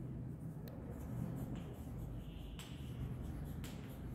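Chalk writing on a blackboard: faint scratching with a few sharp taps of the chalk about a second apart as letters are written, over a low steady room hum.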